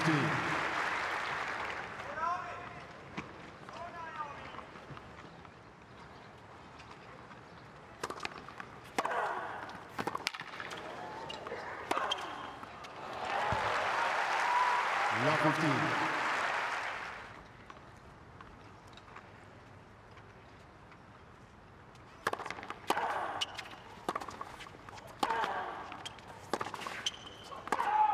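Tennis match sound: crowd applause fading out, then sharp ball strikes and bounces on a hard court, a second burst of applause that swells and dies away, and near the end another run of racket hits in a rally.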